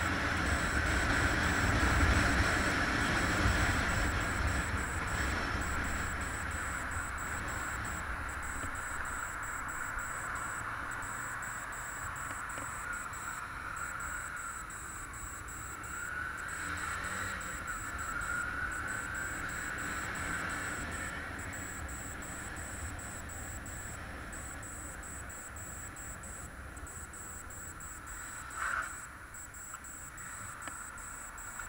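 Motorcycle engine running under way with wind and road noise on the mic, loudest in the first few seconds and easing off as the bike slows. A short sharp sound about a second before the end.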